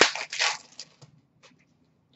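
Foil hockey card pack wrapper crinkling and rustling as it is torn open, a few short crinkles in the first second, then only a couple of faint ticks.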